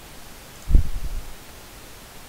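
A single dull, low thump about three-quarters of a second in, dying away over half a second, over a steady hiss.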